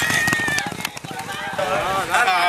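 Spectators yelling and calling out as a racehorse gallops past on a dirt track, its hoofbeats heard as a run of dull thuds under the voices.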